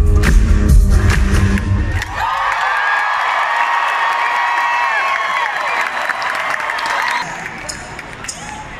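A live pop band plays loudly with a heavy beat, then breaks off about two seconds in. A crowd cheers and screams for about five seconds, then fades near the end.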